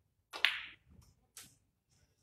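A snooker cue's tip strikes the cue ball with a sharp click, and balls click together again, more faintly, about a second later.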